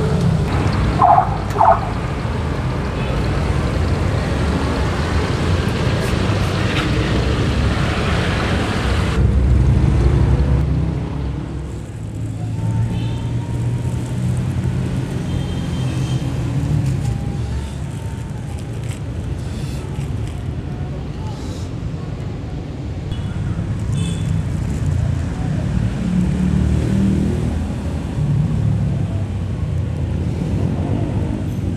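Steady low rumble of road traffic, with two short beeps about a second in.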